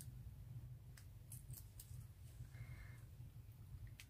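Near silence: a low steady room hum with a few faint taps and rustles of paper die-cut flowers and foam pads being handled and pressed onto card.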